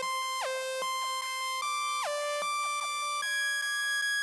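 Synthesizer music without drums: held electronic tones cut by quick downward pitch sweeps about every half second. The held note steps up a little about two seconds in and again a little after three seconds.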